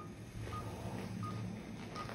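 Anaesthesia patient monitor sounding its pulse beep: short, high beeps a little under a second apart, in step with a heart rate of about 82 beats a minute.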